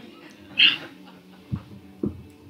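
Handling noise from a handheld microphone as it is passed from one person to another: a brief rub or scrape about half a second in, then a dull thump near the end.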